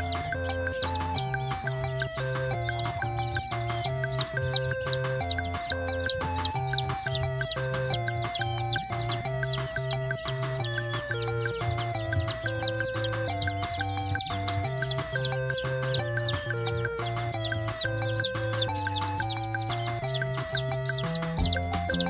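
Newly hatched Serama bantam chick peeping over and over, short high peeps at about three or four a second, louder in the second half. Background music with a steady beat plays underneath.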